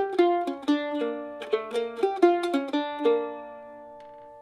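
F-style mandolin picked solo: a quick run of single notes on the low G and D strings, the tune's repeating pattern moved to the IV chord (B flat). About three seconds in the run stops and the last notes ring and fade.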